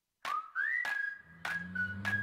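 Jingle music: a whistled melody starts a moment in, sliding up and then holding steady notes over sharp percussion hits about every half second.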